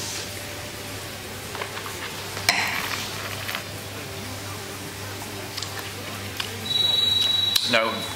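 Wine being sipped and tasted in the mouth. A glass clinks down onto the table about two and a half seconds in, and there is a short high whistling hiss near the end.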